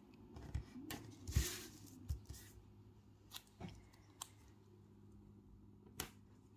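Faint paper rustles and a few light ticks from planner pages and a vinyl sticker being handled and pressed down by fingertips, mostly in the first half.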